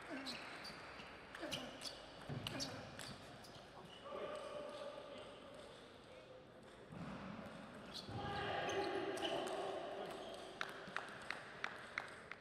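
Table tennis ball clicking sharply off bats and table in rallies, in the first few seconds and again in a quick run of about five clicks near the end. Between them comes a player's shouting: a short shout about four seconds in and a longer, louder one around eight to ten seconds.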